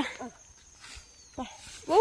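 Field insects trilling steadily at one high pitch in a pause between a woman's words; her speech ends just after the start and begins again near the end.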